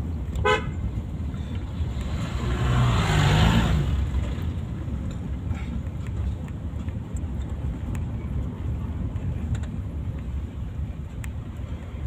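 Steady engine and road rumble inside a moving car's cabin, with a vehicle horn sounding for about a second around three seconds in.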